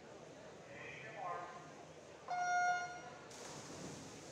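Electronic starting horn of a swim-meet start system giving one steady beep of under a second, the signal that starts the race. A rush of splashing follows as the swimmers hit the water.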